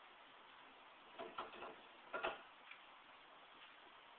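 A few faint, sharp clicks and creaks from the wooden load-test rig under about 110 pounds: a small cluster a little over a second in, then a stronger single click about a second later.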